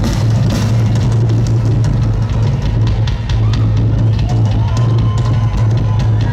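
Live rock drum solo on a full drum kit: fast, dense hits on the drums and cymbals over a strong, steady low hum. A higher held tone slides up and then holds from about four seconds in, as heard from the crowd.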